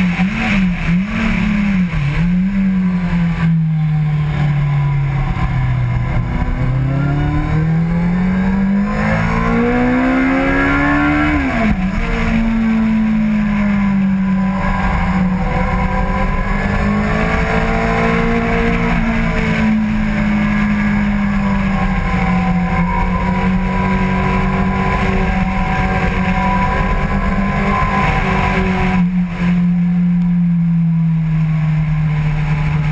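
Kawasaki Z750 inline-four engine heard on board at track speed. The note jumps up and down several times while the bike brakes hard, sinks, then climbs under acceleration. About twelve seconds in it drops sharply and then holds a nearly steady note through a long corner.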